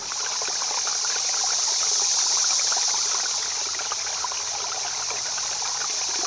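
Running water of a small stream, a steady trickling hiss.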